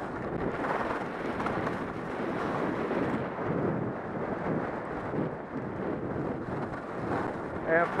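Steady wind rushing over the microphone of a head-mounted camera as the skier descends at speed, mixed with the scrape of Atomic 100 cTi skis carving on groomed snow.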